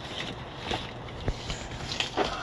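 Rustling and a few light knocks of books and paper being shifted and handled in a pile, over a steady background noise.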